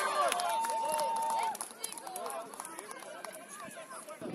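Children's shouts and calls from a youth football match, with voices from the touchline. They are loudest in the first second and a half, which includes one long held call, and lighter voices follow.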